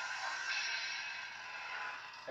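Lightsaber soundboard drag sound, a hissing crackle that slowly fades as the drag ends, over the saber's low hum.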